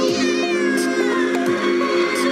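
Background music with a long cat meow in the track, a single call that falls in pitch over about a second and a half.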